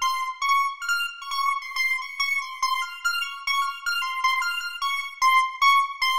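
Arpeggiated square-wave lead synth from Ableton Live's Analog instrument, run through chorus, auto filter, delay and reverb. It plays a steady pattern of high notes that steps between a few pitches about two to three times a second, with no bass or drums under it.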